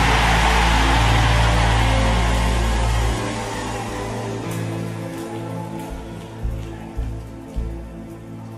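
A church congregation shouting and cheering over sustained keyboard chords with a deep bass note. The crowd noise and bass drop away after about three seconds, leaving the held chords and three soft thumps near the end.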